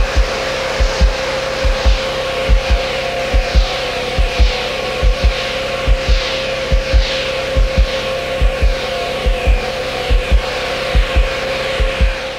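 Background music with a steady drum beat, low thumps recurring a few times a second under a held note.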